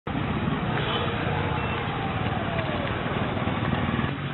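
Steady outdoor road-traffic noise with a motor vehicle engine running, its pitch falling slightly about halfway through.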